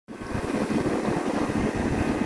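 Motor hum of boats on the river, with wind buffeting the microphone.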